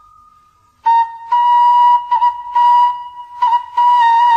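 Background music carried by a flute: a held note dies away, and about a second in the flute comes back with a run of long, steady notes in short phrases.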